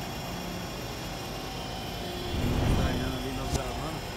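Thermo King trailer refrigeration unit being started: a steady mechanical hum, then a louder low rumble that surges for about a second partway through as its engine is brought on, followed by a sharp click.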